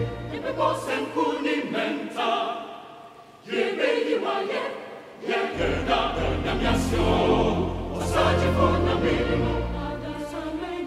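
Large mixed choir singing a choral anthem in Twi, accompanied by electronic organ. The phrase dies away about three seconds in, then the choir comes back in full and a deep organ bass enters halfway through.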